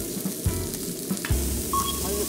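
Slices of Hanwoo chuck-flap beef sizzling on a tabletop grill, a steady frying hiss.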